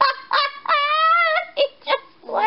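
A high-pitched voice making a few short squeaky sounds, with one longer, slightly wavering sound about a second in.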